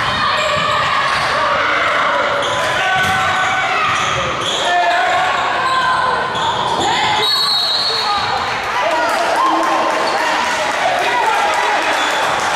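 Basketball game sound in an echoing gymnasium: a basketball bouncing on the hardwood floor, short sneaker squeaks, and a steady mix of spectators' and players' voices.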